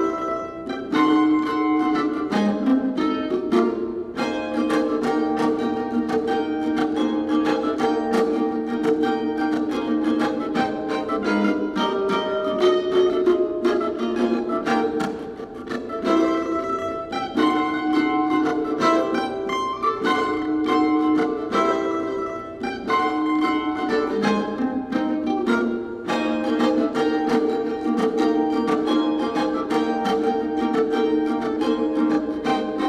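Solo F-style mandolin playing a tune: melody notes held with fast tremolo picking over a plucked accompaniment.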